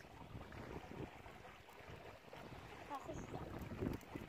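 Faint wind on the microphone over a low, steady outdoor hiss, with a brief faint voice near the end.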